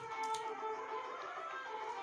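Quiet background music with steady held notes.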